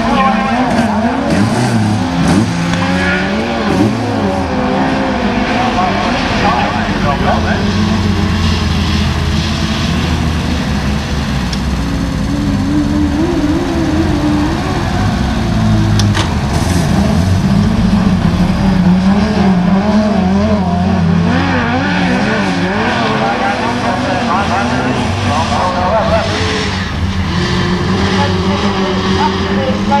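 Several single-seater autograss buggies racing on a dirt track, their engines revving up and down continuously as they lap and overlap one another.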